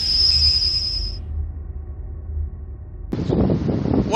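The tail of an intro sound effect: a high ringing tone that stops about a second in over a low rumble that dies away. About three seconds in, the sound cuts to wind buffeting an outdoor microphone.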